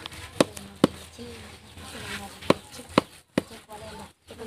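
Metal spatula knocking against a large wok while thick biko sticky rice is being stirred: about five sharp, irregular clacks.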